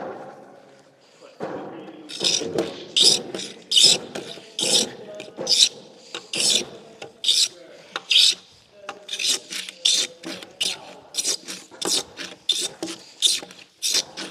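Hand-tool strokes scraping a timber brace's tenon to clean it up for fitting, about two to three strokes a second, starting about two seconds in.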